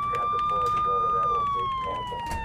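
Police car siren wailing: one high tone holding steady, then starting to slide slowly down in pitch a little past halfway.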